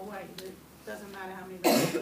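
Quiet talking, then one loud, short cough near the end.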